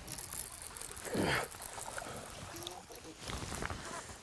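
A man's short exclamation with falling pitch about a second in, over faint steady outdoor hiss and a few small knocks as a hooked bass is fought to the boat.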